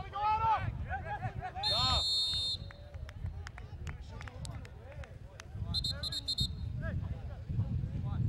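Sports whistle: one blast of about a second, about two seconds in, then a quick run of short blasts about six seconds in, over voices shouting across the field.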